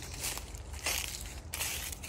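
Footsteps crunching through dry leaf litter, a few steps over a steady low rumble.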